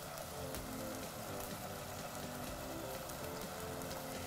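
A steady sizzle of onions and tomatoes frying in oil in a stainless saucepan, under quiet background music.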